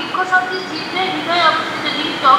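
A person speaking continuously over a steady, noisy background hiss.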